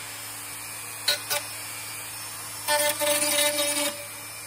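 Rotary tool with a grinding stone bit spinning steadily, touched twice briefly against the plastic toy body about a second in. It then grinds into the body's edge from about three quarters of the way through, louder and with a rasping hiss over the tool's whine.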